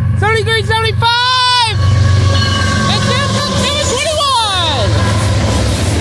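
Diesel freight locomotives passing close by, their engines giving a steady low rumble, with a sound sliding down in pitch about four seconds in as they go past.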